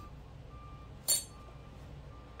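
A metal spoon set down on a stone countertop: one short clink about a second in, otherwise a quiet room.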